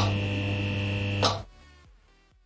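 Intro sting: a steady buzzing hum under held music tones, with a hit at the start. A short swell comes about a second and a quarter in, then the sound drops away to near silence.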